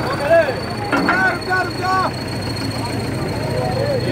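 Tractor diesel engine running with a steady low drone while men shout over it in the first two seconds. A constant thin high whine sits above everything.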